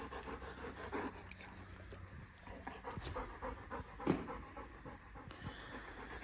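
German Shorthaired Pointer panting quietly in quick, even breaths, out of breath after a spell of catching and retrieving. A single short, sharper sound stands out about four seconds in.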